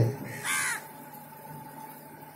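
A single short bird call, heard once about half a second in.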